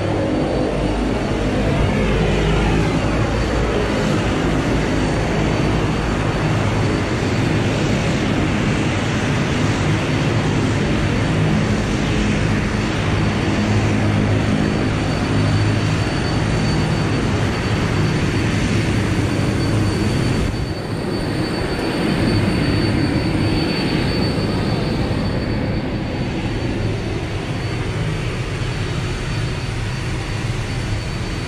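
Steady aircraft noise on an airport ramp: a loud rumble under a high steady whine. It turns duller and a little quieter about two-thirds of the way through.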